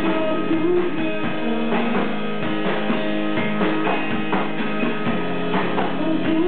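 Live rock band playing: electric guitar over a drum kit, steady and continuous.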